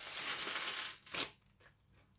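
Small plastic LEGO pieces clattering as they are tipped out of a plastic bag onto a table, with the bag crinkling, for about a second, then one last click.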